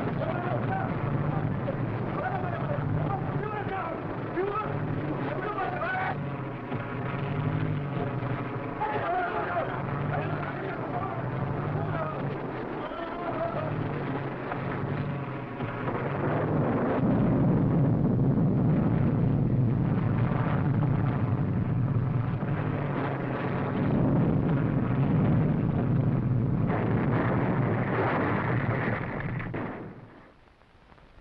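Old film sound effects of a plane coming down in a storm: engine and storm noise with wavering pitched tones and a low, regular pulse. About halfway through, a louder rushing crash noise takes over and cuts off abruptly at the end.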